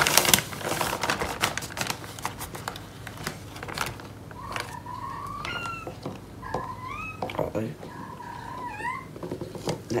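Clicks and rustles of a gloved hand scooping powdered clay into a plastic measuring jug. About halfway through, a few high, wavering pitched calls rise and fall in separate stretches.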